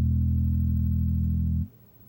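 A single low note on an electric bass guitar held and ringing steadily, the last note of a slow rock bass line, then stopped short about a second and a half in.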